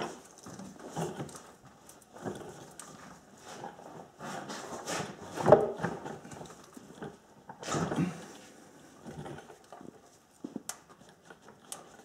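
Socket ratchet clicking and knocking in irregular bursts as the transmission drain bolt is threaded back in and tightened, with one sharp click near the end.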